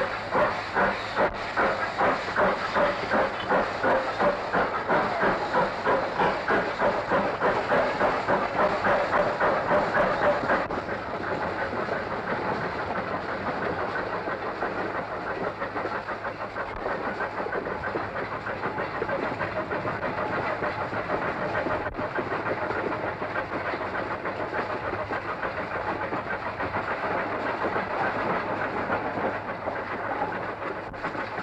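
Steam locomotive running under steam with a rhythmic exhaust beat of about two to three chuffs a second. About a third of the way in, the beat stops suddenly, as when the regulator is closed, and the engine rolls on with a steady rumble and clatter of wheels on rail.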